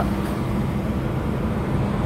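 Steady low rumble of a moving car heard from inside the cabin: engine and tyre noise with no change in pace.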